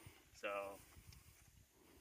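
A single spoken word, then near silence outdoors.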